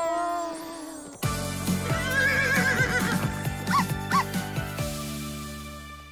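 A short falling voice-like tone, then background music starting about a second in, with a cartoon unicorn's whinny over it.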